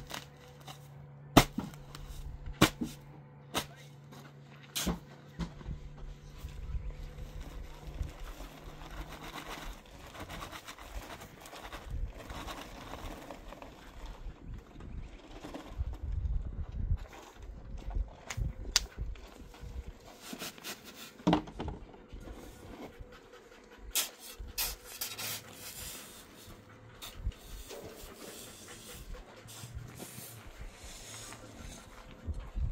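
A steel shovel blade chopping into a paper cement bag lying on sand, several sharp knocks about a second apart. Then the bag is emptied, cement sliding out onto the sand with a soft rushing noise. Near the end the shovel scrapes and clinks as it works the cement into the sand.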